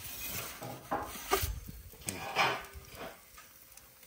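A metal pizza peel scraping and clinking on the stone floor of a gas pizza oven as the pizza is lifted and turned. A few short scrapes, the longest about two seconds in.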